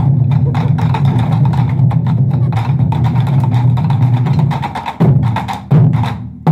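Ensemble of Japanese taiko drums struck with wooden sticks in a fast, dense, continuous drumming pattern. Near the end the playing drops away into two loud unison strikes that ring out.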